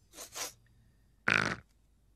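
A rabbit sniffing twice at a carrot, then biting into it with one short loud crunch about a second and a half in.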